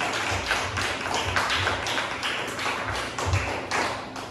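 Comedy club audience applauding, with many quick, dense hand claps and low thuds about twice a second underneath.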